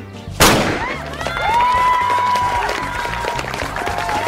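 A starting pistol fires once, about half a second in, then a crowd cheers and shouts over background music.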